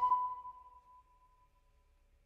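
An ocarina and marimba ending a piece: the last held note fades out, the marimba's final notes dying away within the first half second and the ocarina's high note tapering off over about a second and a half.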